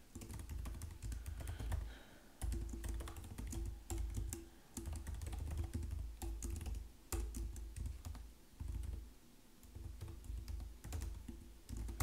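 Typing on a computer keyboard: bursts of rapid key clicks broken by short pauses.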